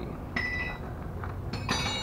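Two short metallic clinks that ring briefly, a fainter one about a third of a second in and a brighter one near the end, over a low steady background hum.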